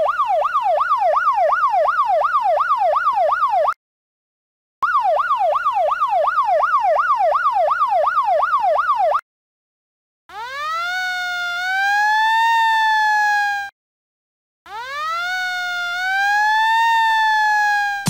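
Siren in four bursts with short gaps between them: first two bursts of fast yelp, the pitch swinging up and down about three times a second, then two slower wails that rise and level off.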